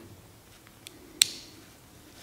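A faint tick, then one sharp metallic click about a second in, from small metal parts handled while a folding knife is reassembled.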